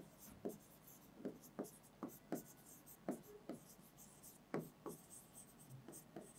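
A pen writing by hand on an interactive display board: a run of faint, short, irregular scratches and taps, one for each stroke of the letters.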